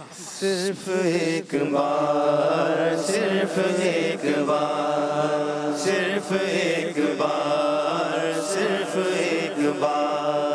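Male voices chanting a devotional naat in long held notes. A wavering lead voice comes first, then a sustained chord of voices from about a second and a half in.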